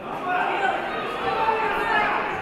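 Many voices calling out and chattering at once, echoing in a large hall, growing louder about a quarter second in: spectators and coaches shouting at a judo bout.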